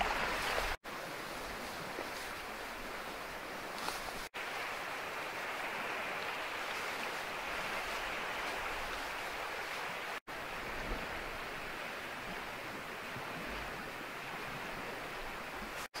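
Steady rushing noise of the outdoor surroundings with no clear single source. It drops out briefly four times.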